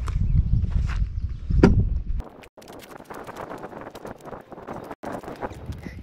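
Wind rumbling on the microphone. About two seconds in the level drops suddenly, and a quieter run of rapid crunching footsteps on dry ground follows.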